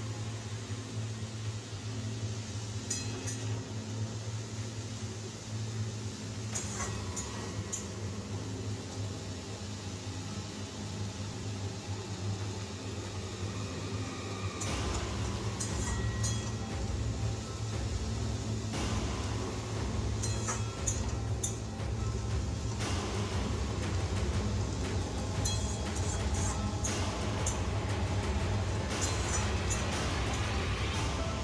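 A metal spatula clinking and scraping against an aluminium karahi as sliced onions are stirred on a gas stove. The clinks come in short runs, more often in the second half, over background music.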